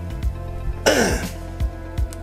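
A man coughs harshly once, about a second in, over background music with a steady beat.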